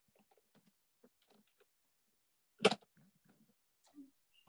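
Quiet video-call audio with faint, broken scraps of sound and one short, sharp burst about two and a half seconds in.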